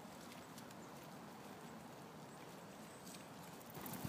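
Faint rustling of dry fallen leaves under a leashed ferret's and its walker's steps, with a few light ticks.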